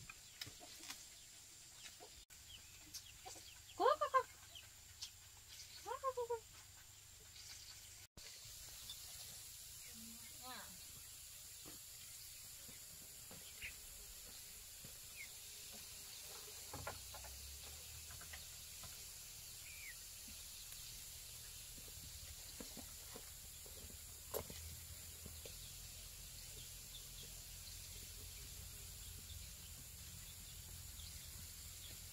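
Chickens clucking and calling now and then, the two loudest calls about four and six seconds in, over faint outdoor background noise.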